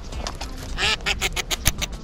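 A duck quacking in a quick series of about seven calls, starting just under a second in.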